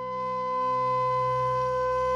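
Slow meditation music: one long held flute-like note over a low drone, swelling gradually louder.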